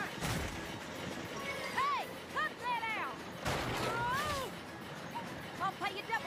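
Cartoon chase soundtrack: music and short arching vocal calls with no words. Two loud rushes of noise come through, one just after the start and one about halfway through.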